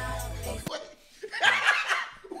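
Music with a bass line plays briefly and cuts off suddenly; after a short gap, a man laughs in bursts through the second half.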